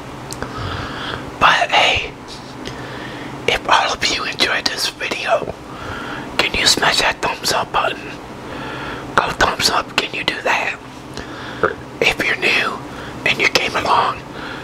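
A man whispering close to the microphone, in short phrases with pauses between them.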